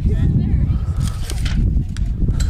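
Outdoor ballfield sound with a steady low rumble and faint distant voices. Near the end comes a short sharp crack as a bat fouls off a full-count pitch.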